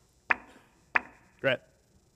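Three sharp knocks about half a second apart, each with a short ringing tail; the last carries a brief pitched ring.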